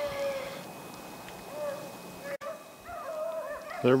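A pack of beagles baying faintly, with drawn-out wavering cries coming on and off. They are in full cry running a rabbit's track.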